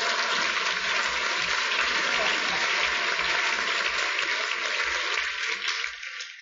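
A room full of people applauding. The clapping is a steady, dense wash that dies away near the end.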